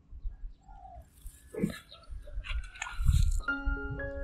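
Outdoor field sound with wind rumbling on the microphone and a few short bird calls. Background music of mallet-like notes, glockenspiel or marimba in tone, starts near the end.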